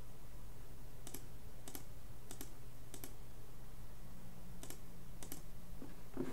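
Computer mouse clicks: about seven single clicks, spaced half a second to a second or more apart, over a low steady hum.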